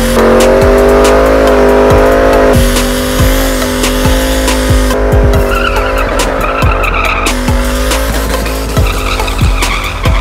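Ford Mustang GT doing a burnout: rear tyres spinning and squealing with the engine held at high revs. Music with a heavy beat plays alongside.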